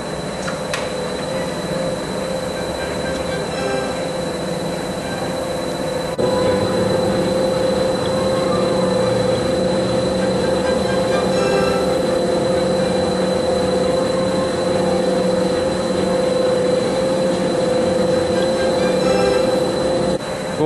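Oil country lathe running with the spindle turning and the carriage under power longitudinal feed: a steady mechanical whine from the geared drive over a hum. It gets a little louder about six seconds in.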